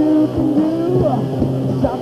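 Live rock band playing loud: distorted electric guitars holding and sliding notes over drum hits.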